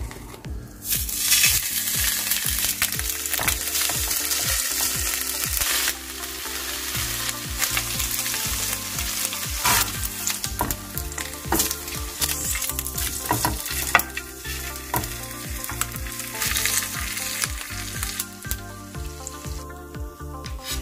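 Pre-boiled pork belly sizzling as it pan-fries over low heat in a nonstick frying pan, starting about a second in and loudest for the first few seconds. A soft background music track runs underneath.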